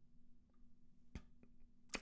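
Near silence: room tone, with a faint click a little over a second in and two fainter ones just after.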